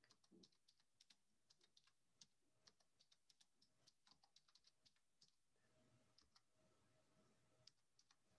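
Faint typing on a computer keyboard: irregular key clicks, several a second.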